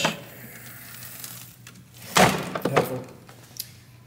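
Hard clamshell saddlebag on a Harley-Davidson Low Rider ST being worked on its quick-release latch: one sharp thunk about two seconds in, then a couple of lighter knocks.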